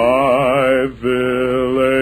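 Male barbershop quartet singing a cappella in close harmony, on sustained wordless vowels. A chord slides up and is held with vibrato, breaks off briefly about a second in, then a second chord is held.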